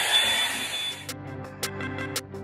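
Drybar Double Shot blow-dryer brush running on its high setting, a steady rush of air with a thin whine, which cuts off about a second in. Background music with a regular beat follows.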